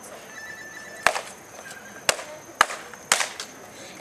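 Four sharp percussive hits, the kind made by a clap or a stomp: one about a second in, then three about half a second apart.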